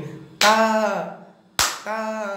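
A harmonium note held under a man singing the syllable "ta", his pitch falling. About a second and a half in comes one sharp hand clap, then another sung syllable over the harmonium.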